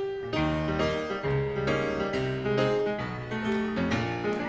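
Grand piano playing a chordal introduction to a Southern gospel quartet song, with chords changing every half second or so.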